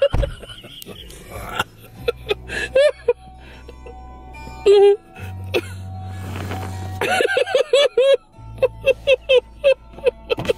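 A person laughing hard in runs of quick, pitched 'ha-ha' pulses, about five or six a second, strongest near the end, over a low steady hum. A short, loud held cry cuts in about halfway through.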